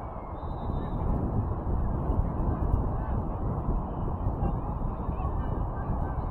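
Wind buffeting an outdoor microphone: a steady, gusting rumble, with faint distant shouts from the field.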